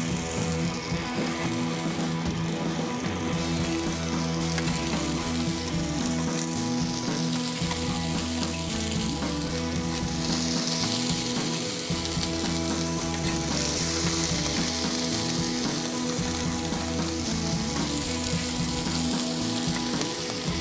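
Burger patties sizzling on a hot Blackstone steel flat-top griddle as more are laid on one after another: a steady frying hiss that grows louder around the middle.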